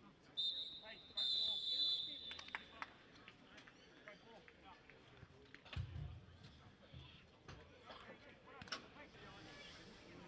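Referee's whistle blown twice, a short blast and then a longer one, signalling half-time. Faint player voices and scattered knocks follow across the pitch.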